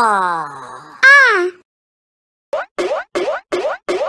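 Cartoon sound effects. A long falling boing-like glide comes first, then a short glide that rises and falls at about one second. After a pause, a rapid run of short falling blips follows, about four a second.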